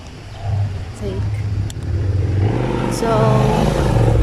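A motor vehicle engine running close by, a low steady hum that grows louder about half a second in.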